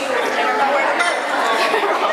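Many people chatting at once in a large room, their voices overlapping into an indistinct hubbub.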